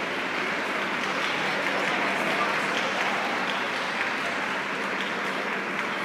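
Audience applauding, a steady patter of clapping hands, with voices underneath.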